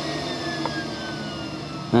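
Electric secondary air injection pump whirring, its whine falling slowly and steadily in pitch, with a faint click about two-thirds of a second in.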